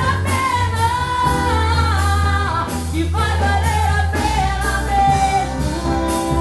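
A woman singing a gospel praise song into a handheld microphone, her sustained, wavering melody carried over an instrumental accompaniment with a steady bass and a beat about twice a second.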